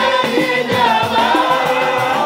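A group of men chanting a Swahili maulid song (sika) in unison through microphones, the melody sliding between held notes, with a regular low beat under the voices.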